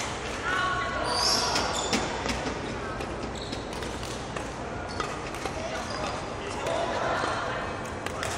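Court shoes squeaking and footsteps on a wooden sports-hall floor as a badminton player runs a footwork drill, with short sharp squeaks, the clearest about a second in.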